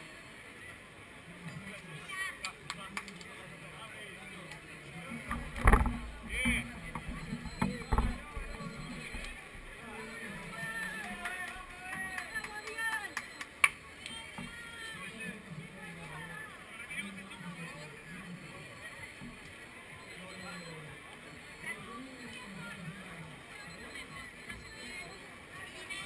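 Crowd chatter and scattered voices of spectators at a running race's finish line. There is a loud low thump about six seconds in and a sharp click a little past halfway.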